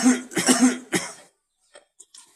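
A person coughing about four times in quick succession, for about a second, right after a sung phrase ends; then it goes quiet.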